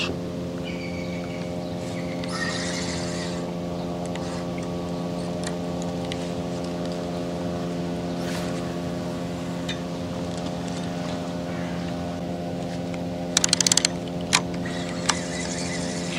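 A steady, unchanging engine hum, in the manner of a boat motor running on the river. About thirteen seconds in there is a short burst of rapid clicks.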